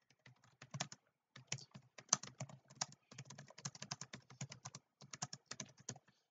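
Typing on a computer keyboard: a quick run of keystrokes, with short pauses about a second in and again near the end.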